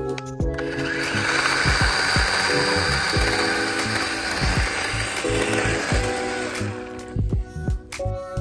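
Battery-powered electric chainsaw running and cutting through a fallen tree branch, a steady whirring that starts about half a second in and stops about a second before the end. A music track with a steady beat plays underneath.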